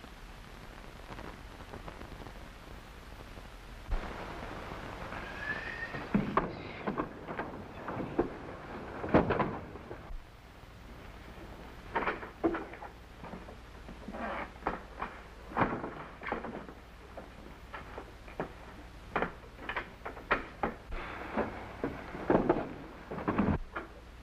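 Scattered, irregular knocks and thuds with a brief squeak about five seconds in: someone moving about and handling things in a dark room, over the steady hiss of an old film soundtrack.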